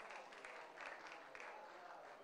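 Faint, light clapping by a few people at an irregular pace, dying away, with faint voices in the room.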